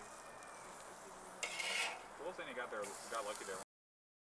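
A metal spatula scraping on a charcoal grill's grate as burgers are flipped: one short scrape about a second and a half in. The sound then cuts off abruptly near the end.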